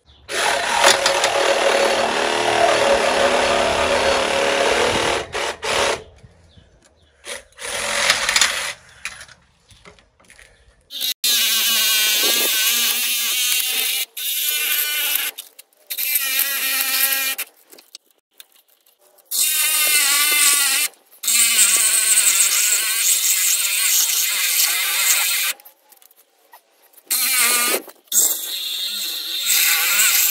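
Electric angle grinder with a cut-off disc cutting into the end of a large generator stator, run in repeated bursts of one to five seconds with short pauses. Its pitch wavers as the disc bites and eases.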